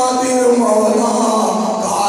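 A man preaching into a microphone in a melodic, chanted delivery, his voice drawing out long held notes that glide up and down.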